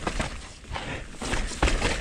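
Mountain bike rolling down a dirt trail: tyre noise on dirt and leaves with knocks and rattles from the bike, and a sharp knock about one and a half seconds in.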